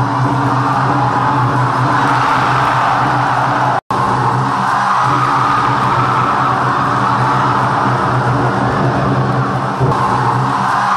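Loud, steady background music with a dense, even texture. It cuts out completely for an instant about four seconds in.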